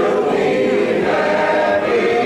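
A church congregation singing a hymn together, many voices holding long notes that step from one pitch to the next.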